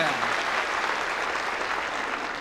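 Audience applauding steadily, with the last sung note fading out at the very start.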